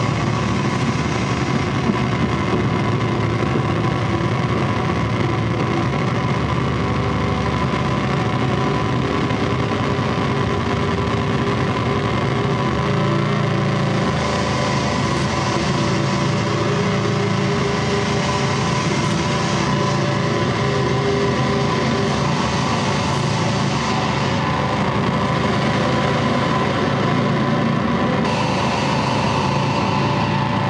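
Live harsh noise set from electronics and effects pedals: a loud, unbroken wall of distorted noise over a low drone, its texture shifting a few times without ever letting up.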